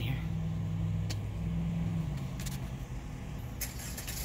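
Car engine idling steadily, heard from inside the cabin as a low, even hum, with a few faint clicks.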